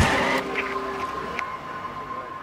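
Street traffic noise, a steady rush that slowly fades.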